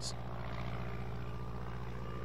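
Steady, low engine-like drone, like a small propeller plane, from the model biplane running on its overhead track above the train layout.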